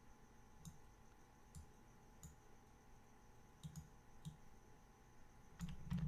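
A handful of faint computer-mouse button clicks, irregularly spaced over a quiet background hum, as spline points in a CAD sketch are clicked and dragged.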